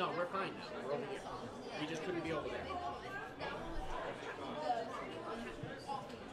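Indistinct chatter of several voices in a bowling alley, with no clear words.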